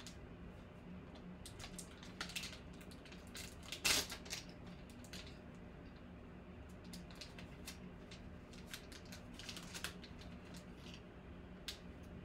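Metallic foil card pack crinkling and crackling as it is opened by hand, in scattered irregular crackles, the loudest about four seconds in.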